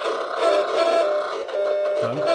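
Steady electronic buzzing tones from the speaker of a high-frequency (RF) meter that makes radio signals audible. With the mobile phones switched off, it is picking up the background radio signals still around.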